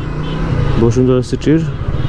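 Suzuki GSX-R150's single-cylinder engine running steadily at low revs as the motorcycle rolls slowly through traffic, with a man talking over it partway through.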